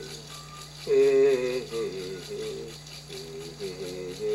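A voice singing a wordless chant melody in wavering phrases over a steadily shaken rattle, as in an Amazonian ayahuasca healing song (icaro). The singing swells about a second in.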